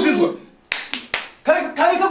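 Three quick, sharp hand claps, about a quarter second apart, coming about a second in.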